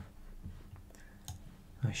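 Several scattered, light computer mouse clicks.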